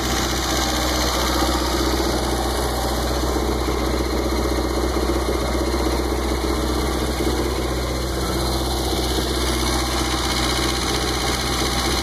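A 1970 Glastron V164's inboard engine idling steadily. This is its first run after winter storage.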